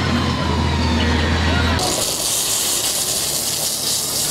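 Diesel engine of a motor grader running steadily under load as its blade pushes gravel. Nearly two seconds in, this gives way abruptly to a steady hiss of a bitumen distributor truck spraying from its rear spray bar.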